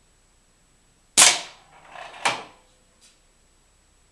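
Air gun shot with the pellet smacking into a homemade spinning steel-and-plywood target about a second in. A short rattle follows as the weighted axle turns the target plate, then a second sharp knock about a second later as the plate stops against its next stopper pin.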